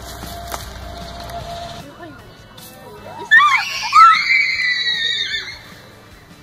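A person's long, high-pitched, wavering scream, lasting about two seconds from a little past halfway.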